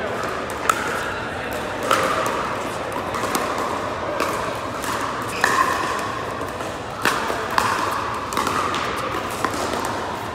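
Pickleball paddles striking a hard plastic ball during a doubles rally: a string of sharp pops, roughly a second apart and unevenly spaced, echoing in a large indoor hall, with the chatter of other players underneath.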